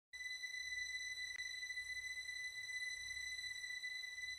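A steady high-pitched electronic tone held over a low rumbling drone, with one faint tick about a third of the way in: the quiet opening of a title-sequence soundtrack.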